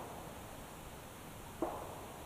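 Quiet woodland ambience: a faint, steady hiss of background noise, broken by one short sharp sound a little before the end.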